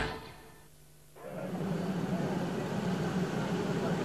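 The end of a TV advert fades to near silence. About a second in, a steady low engine hum with hiss comes up: motor-vehicle noise from the live race feed.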